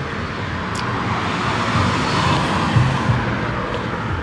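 Street traffic noise: a steady rush of car engine and tyre noise that builds a little toward the middle, as a car passes.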